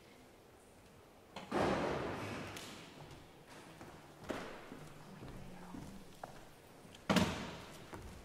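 Three separate thumps a few seconds apart, the last one the loudest, each trailing off in the room's echo.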